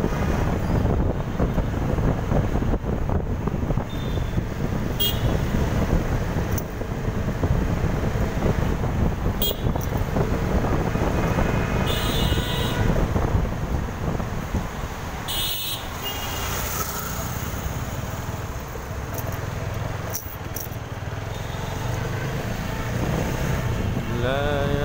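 Busy city street traffic heard from a moving vehicle: a steady low road and engine rumble, broken by several short horn toots, about five seconds in, around ten, twelve and fifteen seconds.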